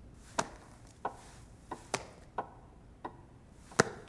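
A series of sharp taps or knocks on a hard surface, most about two-thirds of a second apart, with a louder one near the end.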